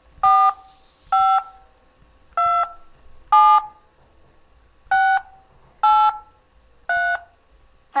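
Seven touch-tone (DTMF) keypresses from the Skype dial pad, each a short two-pitch beep about a second apart, dialing the digits 4-5-2-7-6-8-3. These are the first group of a Windows installation ID being keyed into an automated phone activation line.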